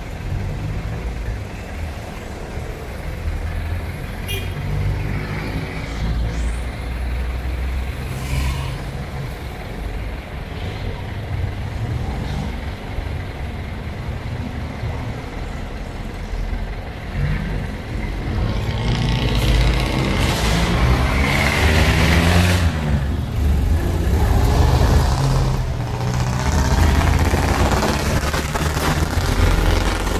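Passenger jeepney's diesel engine idling with a low rumble while stopped, then revving louder with rising and falling pitch as it pulls away, from about two-thirds of the way in.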